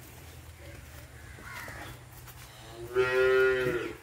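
A Jersey cow mooing once, a single steady call of about a second near the end.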